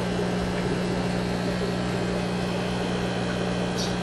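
Aquarium air pump running with a steady low hum.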